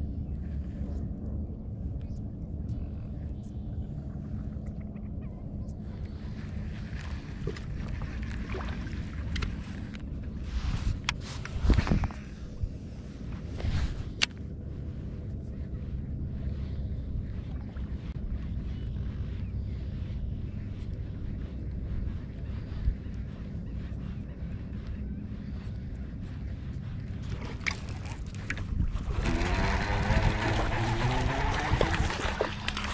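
Low steady hum of a bow-mounted electric trolling motor, with a few sharp clicks around the middle. Near the end, water splashes as a hooked bass thrashes at the surface.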